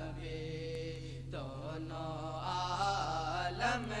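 A male naat reciter's voice singing a drawn-out melodic phrase of a naat, Urdu devotional verse, without clear words: a held note, a short break about a second in, then a rising phrase leading into the next line. A steady low hum runs underneath.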